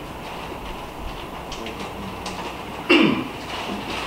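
Scattered light clicks of typing on a laptop keyboard, with one brief loud sound that falls in pitch about three seconds in.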